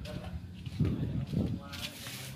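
Indistinct talking: a person's voice in a few short phrases.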